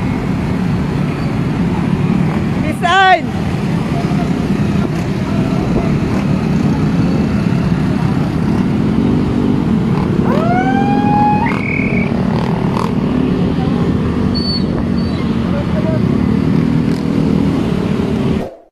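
Dozens of small motorcycle and scooter engines running together as a dense column rides past, a steady mass of engine noise. Brief shouts rise over it about three seconds in and again near the middle.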